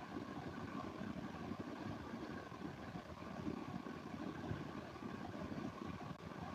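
Faint, steady low hum and hiss, with no speech: the background noise of an open microphone on a voice-chat stream.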